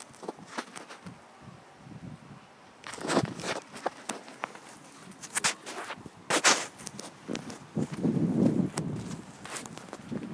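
Footsteps on rough ground, irregular, with louder scuffs about three seconds in and again about six and a half seconds in.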